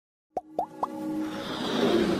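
Intro-animation sound effects: three quick plops about a quarter second apart, followed by a swelling electronic music riser.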